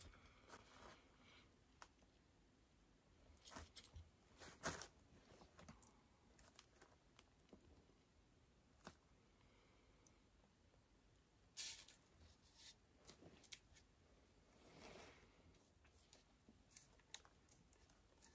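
Near silence, broken by a few faint, scattered clicks and rustles from gloved hands handling and turning a paint-covered lazy susan.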